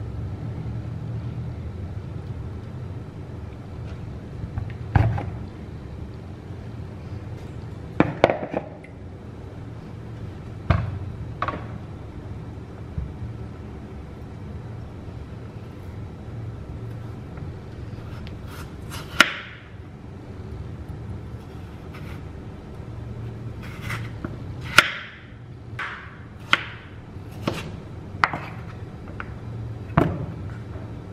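Kitchen knife chopping peeled potatoes into cubes on a wooden chopping board, the blade knocking the board in sharp single strokes, scattered at first and coming thick and fast in the second half. A steady low hum runs underneath.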